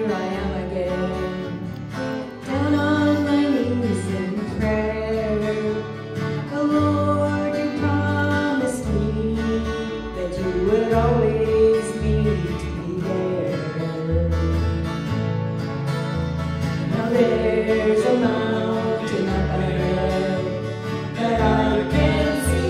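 Live gospel music: a small group playing acoustic guitar and bass guitar with voices singing the melody over a steady bass line.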